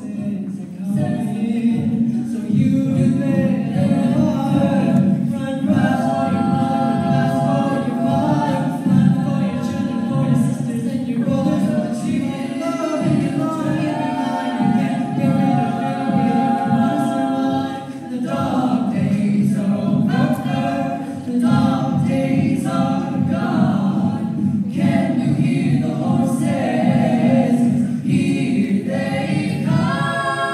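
A five-voice a cappella group singing in harmony into handheld microphones, with a low sung bass part under sustained chords; the sound drops away briefly about two thirds of the way through before the voices come back in.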